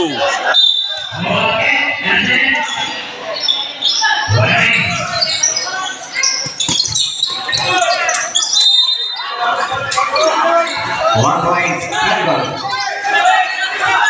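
A basketball bouncing on a gym court during play, with sharp thuds among the players' and onlookers' voices and a laugh near the start, all echoing in a large covered hall.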